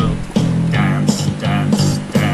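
Electronic keyboard music with a plucked, guitar-like tone over a steady rhythmic bass line, with a man singing along into a microphone.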